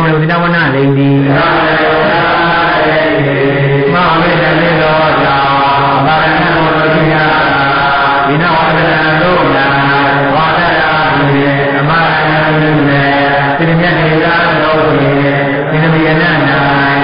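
A man's voice chanting a recitation on a nearly level, low pitch, in unbroken phrases of about a second each.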